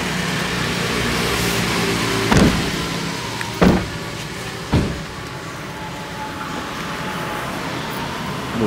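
Steady engine and road noise inside a slow-moving car. Three heavy thumps come between about two and five seconds in.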